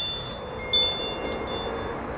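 Wind chime tinkling: several high metal tones struck one after another and ringing on, the loudest just under a second in, over a faint steady background.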